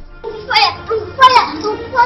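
A child's high-pitched voice calling out twice in loud bursts, over background music.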